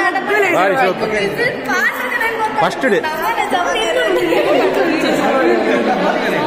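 Several women chattering and talking over one another in a large hall.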